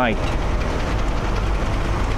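A steady low rumble with a faint hiss over it, unchanging throughout, as the last word of speech dies away at the very start.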